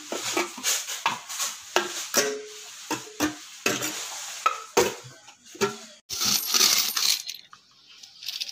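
Pliers prying and bending the metal lid of a coin bank tin: a string of sharp metallic clicks and clanks, some with a short ring. About six seconds in, a second-long rattle of coins shifting inside the tin as it is turned over.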